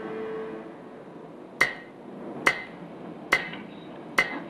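Three sharp count-in clicks, evenly spaced a little under a second apart, counting in a guitar rhythm-pattern exercise.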